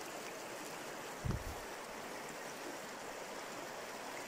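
Steady rush of river water running over a shallow riffle, with a brief low thump about a second in.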